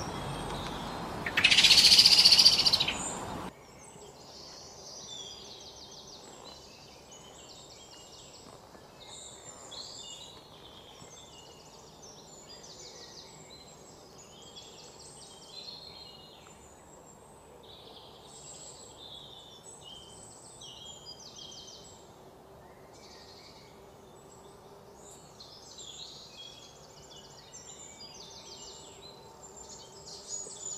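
Small birds chirping, many short high calls overlapping without pause. In the first few seconds a much louder sound lasts about two seconds, then cuts off abruptly.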